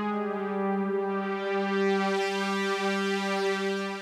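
Sustained synthesizer string chord from an Oberheim Matrix, its filter cutoff swept up and down by the mod wheel. The tone brightens around the middle and dulls again toward the end.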